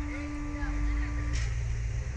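A low, steady mechanical rumble from the slingshot ride's machinery as the capsule is held ready for launch. It swells about half a second in, and a steady hum stops about a second and a half in.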